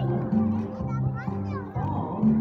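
A children's song playing, its low notes changing about every half second, with young children's voices singing along.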